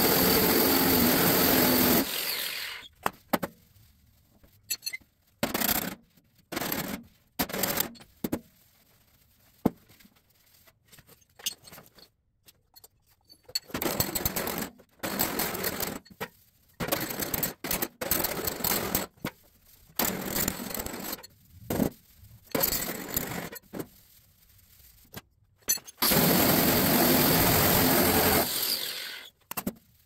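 Angle grinder spinning a five-inch disc against the sheet-steel fender, run in bursts to work down stretched high spots: a run of about two seconds at the start, a string of short bursts in the middle, and a longer run near the end.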